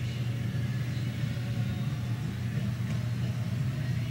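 A steady low hum, even in level throughout.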